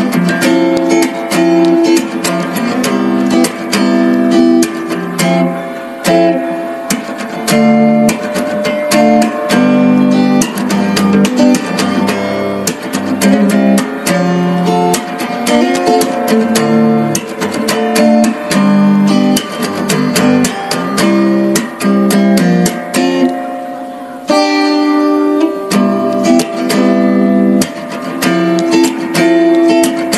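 Background music led by an acoustic guitar, with a steady run of plucked and strummed notes.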